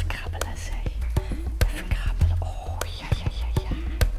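Soft whispering over background music, with frequent sharp clicks throughout.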